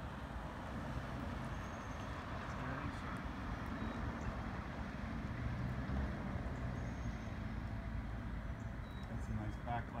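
Steady outdoor street ambience: an even low rumble with hiss and no clear single event. A voice begins right at the end.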